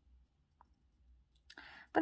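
Near silence in a quiet room, with a faint tick about halfway through. Near the end comes a click and a short soft in-breath just before speech resumes.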